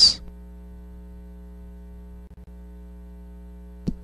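Steady electrical mains hum: a low, even buzz made of several fixed tones, with nothing else over it. A faint click near the end.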